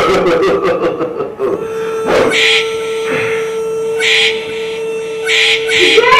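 Film sound effect or score for a supernatural moment: a single held tone with short hissing, shaker-like bursts laid over it, three or four times.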